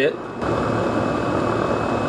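MSR Windburner canister gas stove's burner hissing, growing louder about half a second in as the flame is turned up, then holding steady.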